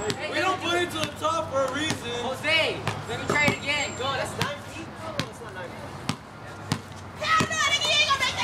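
A basketball bouncing on a hard court, several separate irregular bounces, with young people's voices chattering and calling out over the first half.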